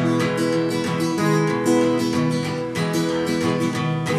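Steel-string acoustic guitar strummed in a steady rhythm, with chords ringing and changing, and no singing.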